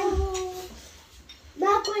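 A high-pitched voice held on one note for about half a second, then a brief lull before another voice starts near the end, with a low thump of handling noise early on.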